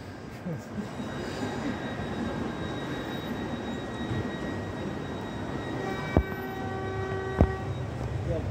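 Train wheels squealing on the sharply curved platform track over a steady rumble of rail noise. A thin high whine comes first. From about six seconds in, a fuller pitched squeal holds for a second and a half, with two sharp knocks just over a second apart.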